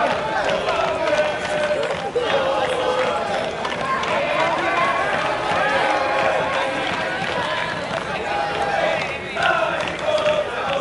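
Many overlapping voices shouting and calling without clear words at an outdoor football match: players, coaches and supporters. Some calls are drawn out, and a louder burst of shouting comes just before the end.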